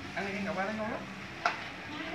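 Quiet speech with a single sharp click about one and a half seconds in.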